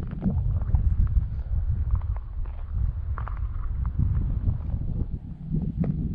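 Wind buffeting the microphone, a steady low rumble, with scattered faint footsteps on gravelly ground.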